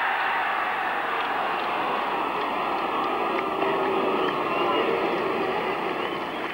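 Cricket crowd's steady murmur of chatter, with faint individual voices rising and falling within it.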